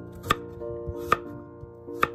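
Kitchen knife chopping cucumber on a wooden cutting board: two sharp chops about a second apart, the blade knocking on the board.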